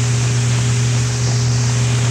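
Steady hiss with a constant low hum: the in-flight background of a B-52 bomber's crew interphone, as heard on the original onboard flight recording.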